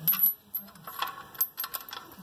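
Small metal chain clinking and jingling as it is handled, a scatter of light metallic ticks.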